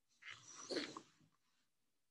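A single short voice-like cry, under a second long, with gliding pitch, heard against near silence.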